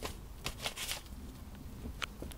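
Paper rustling and crinkling as a rabbit noses and tugs at it with its mouth while gathering nesting material: a few short rustles, bunched from about half a second to a second in.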